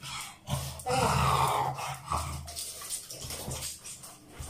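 A pet dog's bath in a small tiled bathroom: water dripping and splashing, with a short rising whine about a second in, followed by the loudest, noisy stretch.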